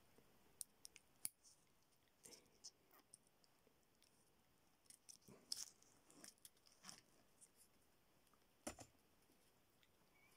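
Faint, scattered plastic clicks and rustles from hands unclipping a clip-on ferrite core and taking it off a mains cable, with a sharper click near the end.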